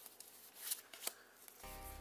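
Pokémon trading cards being handled and shuffled: a few quiet sharp snaps and rustles of card stock. Soft background music with sustained low notes comes in near the end.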